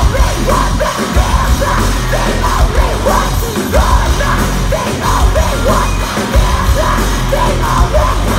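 A live rock band playing loudly through a festival PA, with electric guitar, bass and drums and yelled vocals over a pulsing low end.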